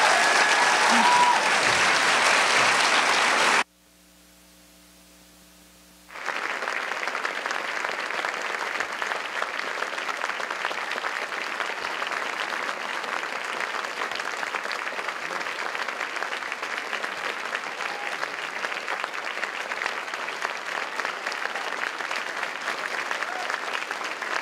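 Audience applauding. The clapping drops out for a couple of seconds about four seconds in, leaving only a faint steady hum, then resumes and goes on steadily, a little quieter than at first.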